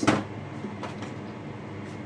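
A single sharp knock as something is set down on a kitchen countertop, followed by faint handling ticks over a steady low hum.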